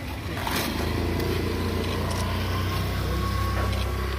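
A motor vehicle's engine running with a steady low rumble, building up about half a second in and holding steady.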